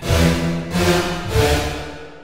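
Thick, detuned supersaw future bass chords from a Serum synth preset, a short progression changing about every two-thirds of a second and ending in a fading reverb tail. The reverb is at full mix with its low cut just raised to trim its low end.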